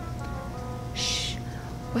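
Soft background music with sustained held notes, and a brief hiss about a second in.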